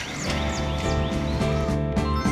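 Background music with a steady beat and bass comes in about a quarter-second in. Over its opening, a bird gives quick falling chirps, about three a second, which stop about a second in.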